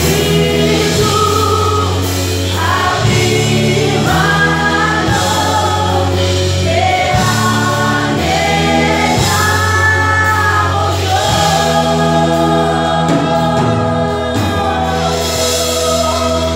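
Live congregational worship music: several voices singing a Spanish-language worship song together over a band, with long sustained low bass notes underneath.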